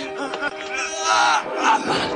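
A man's loud, wavering yell about a second in, over dramatic orchestral score music.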